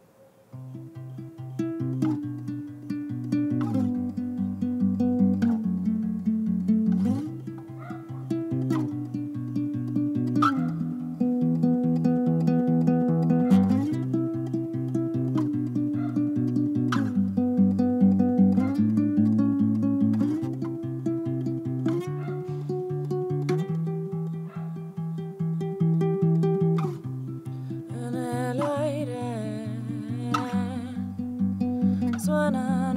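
Classical acoustic guitar fingerpicked: the instrumental intro of a song, repeated plucked chord patterns that start about half a second in.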